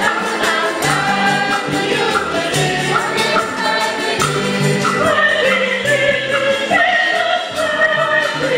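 Women's church choir singing a hymn through the church's loudspeakers, over keyboard accompaniment with sustained bass notes and a steady percussive beat.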